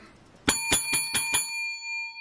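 A small bell struck five times in quick succession, about a fifth of a second apart, its tones ringing on afterwards. It is rung to celebrate a winning scratch ticket.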